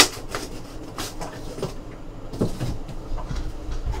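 Cardboard boxes being handled at a desk: a sharp knock at the start, then scattered light taps and rustles of cardboard being moved.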